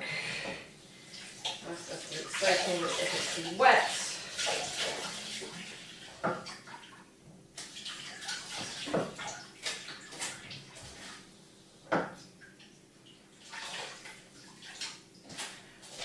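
Kitchen tap running and water splashing in a sink for the first several seconds, then fading, followed by a few sharp knocks and clinks of washing-up.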